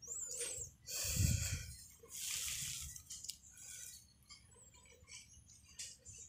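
Quiet outdoor ambience with a short high bird chirp near the start, then a few soft rustles about a second in and again around two to three seconds in.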